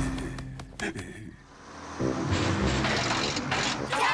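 A short music phrase fades out, and about halfway in a cartoon sound effect of a bus engine starts, running steadily as the bus drives uphill.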